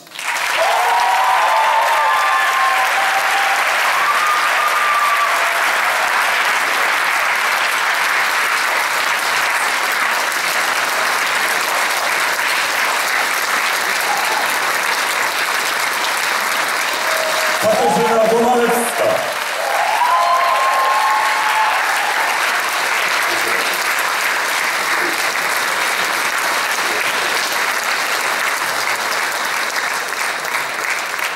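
Large theatre audience applauding steadily, with a few voices calling out from the crowd near the start and again about two-thirds of the way through.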